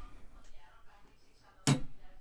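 Quiet room tone, then one short vocal sound from a man near the end.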